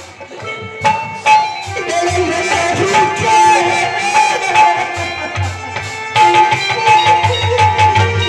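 Live stage-band music: harmonium notes held over a steady drum beat.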